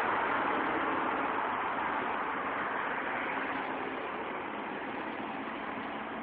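Street traffic: a steady rush of passing vehicles on a busy city boulevard that slowly fades.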